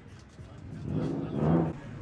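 A car engine revving up and easing off, over background music.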